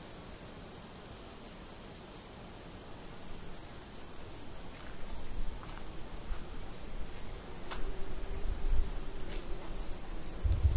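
Night-time crickets chirping: a steady high-pitched trill under a regular, rapid chirp, about three chirps a second.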